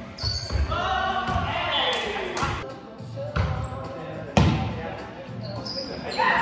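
Indoor volleyball rally in a gymnasium: several sharp slaps of the ball being hit and landing, the loudest about four seconds in. Players shout, with one long call falling in pitch about a second in.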